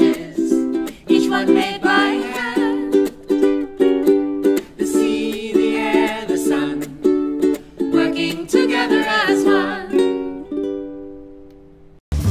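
Hawaiian-style ukulele music: a steady, rhythmic strum of chords with a melody line over it, fading out over the last two seconds.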